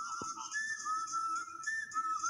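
A slow whistled melody from a film soundtrack, played through a TV's speakers: long, pure held notes with a slight waver, stepping up to a higher note and back a couple of times.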